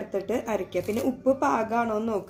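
Speech: a voice talking without pause.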